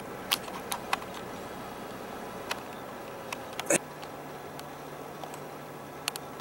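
Steady low noise inside a moving car, with scattered light clicks and knocks from handling the video camera as it is zoomed in. A sharper knock comes a little under four seconds in, after which a low steady hum sets in.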